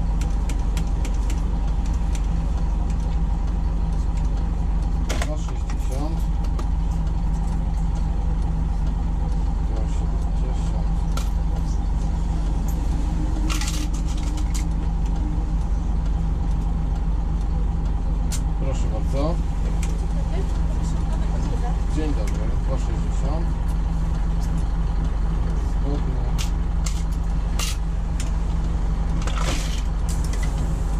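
Diesel engine of a DAB articulated city bus idling steadily, heard from the driver's cab, with a few short sharp sounds over it.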